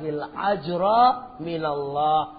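A man speaking, his voice climbing in pitch about halfway through and then falling again.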